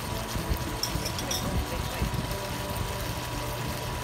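Chicken pieces sizzling in a wok on an induction cooktop, a steady sizzle over a low hum.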